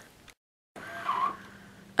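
Quiet room tone between sentences, with a brief stretch of total silence where the recording was cut, and a faint short sound about a second in.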